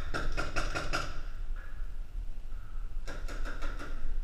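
Paintball markers firing in two rapid bursts of about five or six pops each, one at the start and one near the end.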